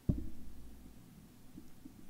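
A dull, low thump just after the start, its low rumble fading over about half a second, followed by a few faint soft knocks.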